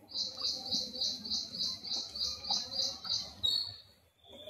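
An animal calling: a fast run of about a dozen sharp, high chirps, roughly four a second, ending in a short different note near the end. Underneath, oil bubbles faintly around gulab jamun deep-frying in a wok.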